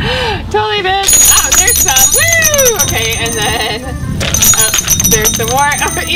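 A woman laughing and squealing, her voice rising and falling in long drawn-out arches rather than words.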